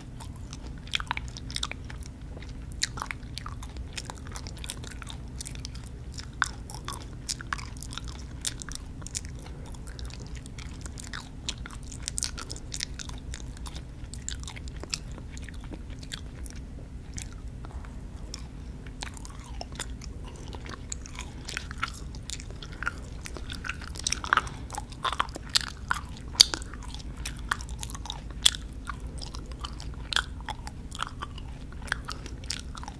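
Close-miked chewing of sour gummy worms: biting and mouth sounds made of many short sharp clicks and smacks, loudest in a cluster late on, over a steady low hum.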